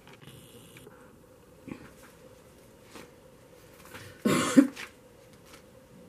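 A woman coughs once, short and sharp, about four seconds in, over quiet room tone with a faint steady hum.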